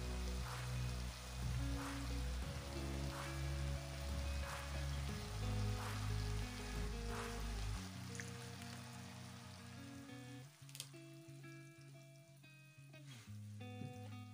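Background music with sustained notes and a steady beat, over the faint sizzle of chicken pieces and green peppers frying in a pan; the low notes drop out about eight seconds in and the sizzle fades toward the end.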